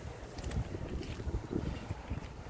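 Wind buffeting a phone's microphone outdoors: an uneven low rumble that swells and drops.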